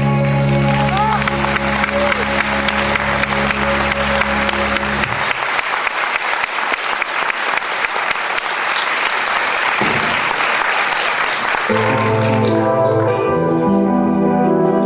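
Audience applause rising over a song's final held chord about a second in; the music stops about five seconds in, leaving the applause alone, and near the end new instrumental music begins as the clapping fades out.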